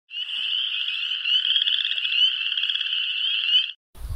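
A dense chorus of high, fast-trilling animal calls that goes on unbroken, then cuts off suddenly just before the end.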